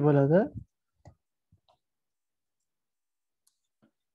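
A few faint, scattered computer keyboard keystrokes, the loudest about a second in, over otherwise near silence, as a line of code is typed.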